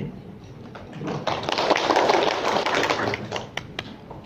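Audience applauding: a dense patter of many hands clapping that builds about a second in and thins to a few scattered claps near the end.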